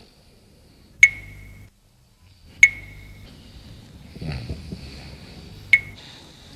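Sharp pings, each with a brief high ring, recurring about every one and a half seconds. A faint steady high-pitched hiss comes in midway.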